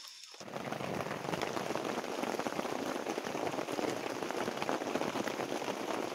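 Steady rain falling on rainforest foliage: a dense, even patter of drops that starts abruptly about half a second in.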